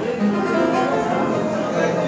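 Old upright piano playing an instrumental introduction, with chords and a moving melody line and no singing yet.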